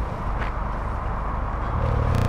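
Nissan 240SX's SR20DET turbocharged four-cylinder engine running at low revs, heard at a distance as a steady low rumble.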